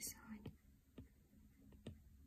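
Faint ticks of a stylus tip tapping down on an iPad's glass screen as short hair strokes are drawn, a few sharp ticks about a second apart.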